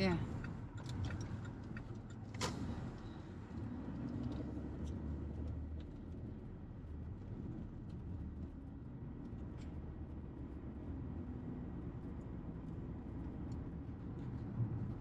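Steady low rumble of a car's engine and tyres heard from inside the cabin while driving, with one sharp click about two and a half seconds in.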